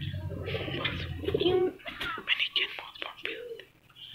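Domestic pigeons cooing, with short clicks and rustles from the birds being handled.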